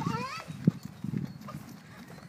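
Running footsteps on dry, packed dirt: a few dull, irregular thuds.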